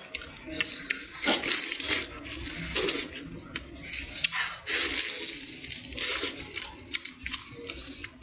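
Meat and skin being torn off a roast goose leg by hand: a run of small crackles and tearing noises, with a bite into the meat at the very end.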